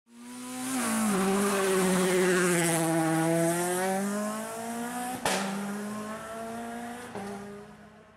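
Race car sound effect: an engine held high in the revs, its pitch dropping about a second in, with a sharp crack a little after five seconds and a lighter one near seven, then slowly fading away.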